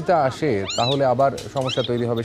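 Leopard cub mewing, thin high-pitched calls that rise and fall, a few times under a man's voice.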